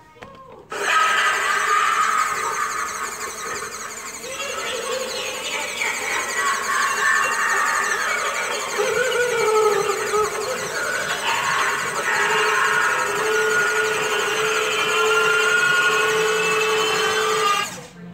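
Life-size animatronic boogeyman Halloween prop running its triggered routine: a loud, steady whirring with shifting, wavering tones over it. It starts about a second in and cuts off suddenly just before the end.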